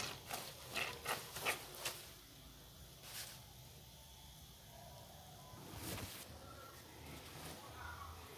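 Soapy water splashing a few times in a plastic washbasin in the first couple of seconds, then only faint background noise with one or two small knocks.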